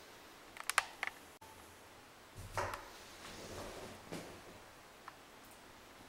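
A quick run of sharp clicks about a second in, then a few soft, low thumps over quiet room tone.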